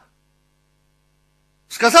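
Near silence with only a faint, steady electrical hum, as in a pause in a recorded sermon; a man's voice resumes near the end.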